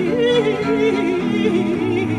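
Baroque chamber ensemble playing: a high melody with quick turns and ornaments over steady sustained chords from chamber organ and viola da gamba, the low notes changing about every half second.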